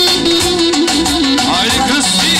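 Loud live band dance music in a Middle Eastern folk style: a wavering, ornamented lead melody over a steady beat.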